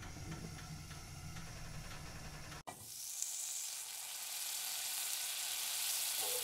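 Food sizzling as it fries, a steady hiss for about two and a half seconds. After a momentary break, a brighter hiss slowly swells.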